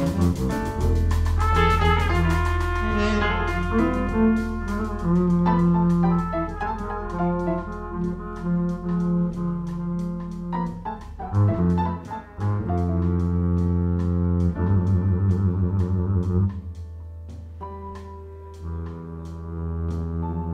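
Live jazz band playing: trumpet and tenor saxophone over upright bass, piano and drums, with evenly spaced cymbal strokes. The band drops quieter about three-quarters of the way through, then picks up again near the end.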